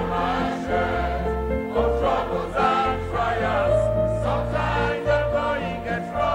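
Mixed choir singing a gospel song over an instrumental accompaniment with sustained bass notes, singing the line "I've had my own share of troubles and trial, sometimes the going get rough".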